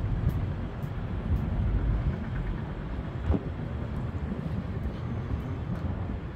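Outdoor city ambience: a low, steady rumble of traffic with wind buffeting the microphone, and faint footsteps at walking pace.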